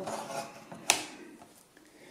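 A 21700 lithium-ion 40T cell being pushed into a slot of an XTAR VC8 battery charger: faint handling rubs and one sharp click about a second in as the cell seats in the slot.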